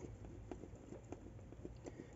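Quiet, scattered small clicks and ticks of hands handling a ribbon hair bow and its metal duck-bill clip while positioning a glue applicator.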